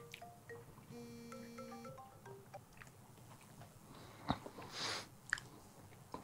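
Mobile phone ringing with a soft, marimba-like ringtone melody that stops about two and a half seconds in, followed by a few faint clicks and a brief rustle.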